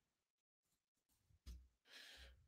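Near silence from a quiet room, with a short faint sound about one and a half seconds in and a faint breath near the end.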